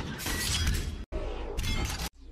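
A crashing, shattering sound effect of an intro sequence, with music. It breaks off abruptly about a second in and starts again at once.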